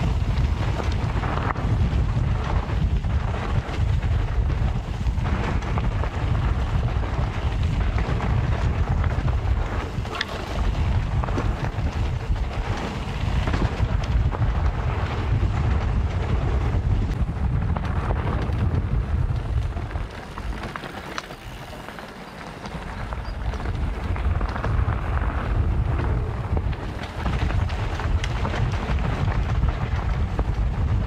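Wind buffeting the microphone of a camera riding along on a mountain bike, mixed with the rumble and rattle of the bike over the trail. The wind noise eases for a couple of seconds about two-thirds of the way through.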